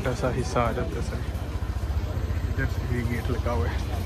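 Street voices over a steady low engine rumble from a motor vehicle, most likely a nearby motor scooter. The voices are clearest in the first second.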